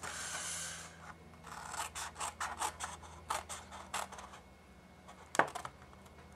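Paper snips cutting into cardstock along a score line: a soft rustle of paper, then a run of short, small snipping clicks, with one louder snip near the end.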